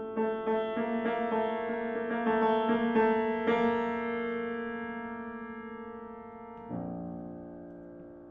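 Steinway grand piano playing alone: a slow run of struck chords that are held and left to ring and fade, with a new chord struck near the end.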